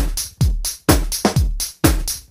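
Deep house music: a steady four-on-the-floor electronic kick drum, about two beats a second, each kick a low thump that falls in pitch, with crisp high hats or percussion between the beats.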